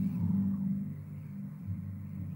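Low, steady rumbling drone from a film soundtrack, a few held low tones with nothing sharp or melodic, a little louder at the start.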